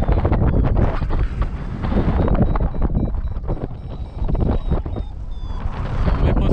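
Airflow rushing and buffeting over the microphone of a camera on a paraglider in flight, steady and loud with uneven gusts.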